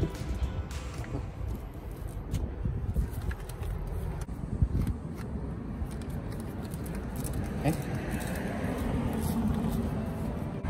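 Low wind rumble on the microphone, with scattered light clicks and knocks as hand tools and a cordless drill are handled; the drill's motor is not run.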